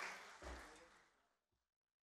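The last of an audience's applause dying away, with a low thump about half a second in. The sound fades out completely by about a second and a half.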